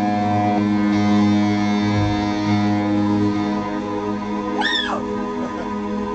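Live band playing: electric guitar and bass holding sustained notes through amplifiers, with one brief high note that bends up and back down near the end.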